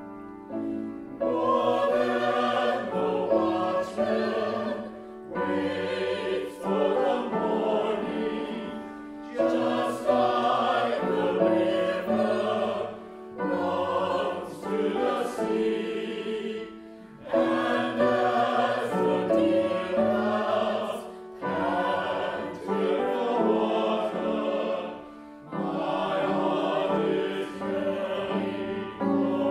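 Church choir singing in phrases of a few seconds each, with short pauses between them.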